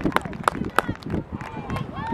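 Rhythmic hand clapping, about three claps a second, which stops about a second in; voices call out near the end.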